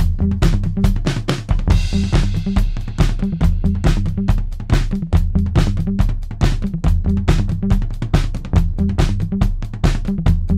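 Background music: a steady drum-kit beat over a bass line, with a cymbal crash about two seconds in.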